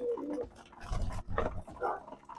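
Domestic pigeons cooing in the loft, with a low knock about a second in.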